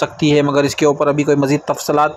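Speech only: a man talking steadily, with no other sound standing out.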